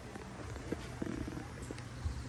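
Low rumble of handling noise on a handheld camera's microphone while walking, with a few soft knocks about a second in.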